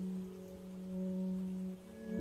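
Background music holding a single steady note, with no speech over it.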